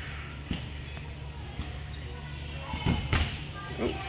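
Uneven bars in use: a few knocks as the gymnast swings on the bars, then two loud thuds about three seconds in as she comes off the bars.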